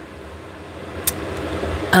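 Steady low background hum with hiss in a pause between words, with one short click about a second in.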